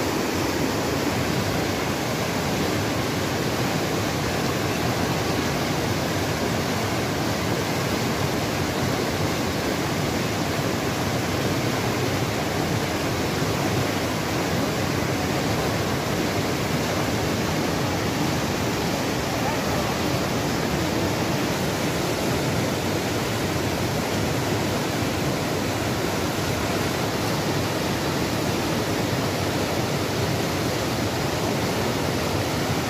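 Fast-flowing mountain river rushing over rocks, a steady, unbroken loud noise of turbulent water.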